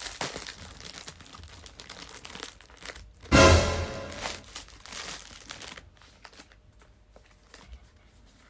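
Paper and plastic wrapping crinkling and rustling as a wallet is unwrapped and handled, with one short loud burst a little over three seconds in.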